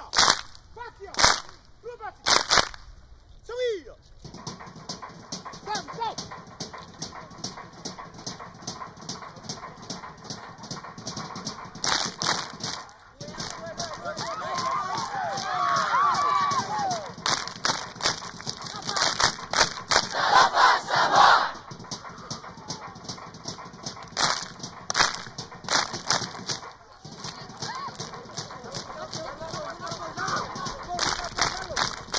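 A large seated group of dancers clapping and slapping in unison in a Samoan group dance (siva fa'aleaganu'u): a few sharp strikes about a second apart at first, then a fast, dense run of strikes in the middle. Many voices shout together over the strikes around the middle.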